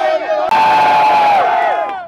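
Crowd cheering, with one long held shout breaking out about half a second in over the crowd noise and tailing off near the end.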